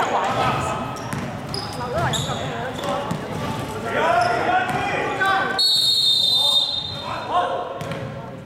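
Players' shouts echo in a large sports hall as a basketball bounces. About five and a half seconds in comes a sharp referee's whistle, held for over a second and the loudest sound.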